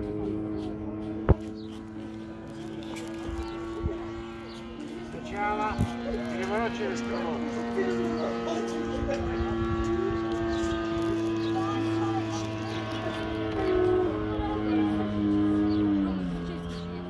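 Engine of a radio-controlled scale Bücker 131 biplane model in flight, a steady drone that holds its pitch and then drops lower near the end. A single sharp click sounds about a second in.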